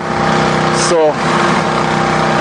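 An engine running steadily: a constant hum with a noisy wash over it, with one short spoken word about a second in.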